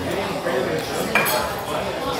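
Fork and dishes clinking against a plate over restaurant background chatter, with one sharper clink about a second in.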